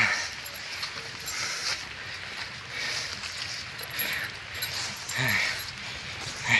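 A hiker breathing hard while climbing a steep trail, with soft rhythmic breaths a little over a second apart close to the microphone. A brief vocal sound comes about five seconds in.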